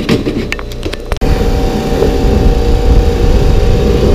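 A few sharp clicks and light clatter of small items being handled, then from about a second in a pressure washer running steadily: a loud, even drone with a steady hum, its spray washing down a plastic calf hutch.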